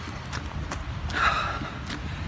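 A runner's footfalls on a dirt forest trail, about three a second, with his breathing, a longer exhale about a second in, over a low rumble of wind on the phone's microphone.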